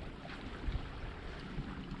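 Wind rumbling on the microphone over open water, with a steady hiss and uneven low gusts, and water lapping at the boat's hull beneath it.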